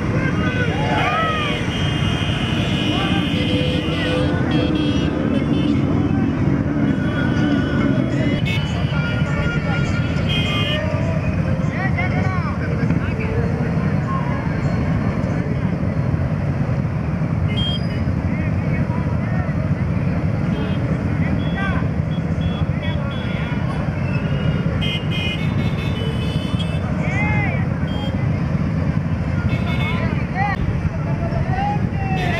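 Many motorcycle engines running together in a slow procession, a steady dense low rumble, with voices shouting over it. A lower steady tone under the rumble stops about a quarter of the way in.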